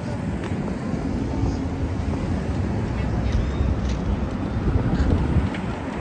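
Steady city street noise: traffic rumble with voices of passing pedestrians.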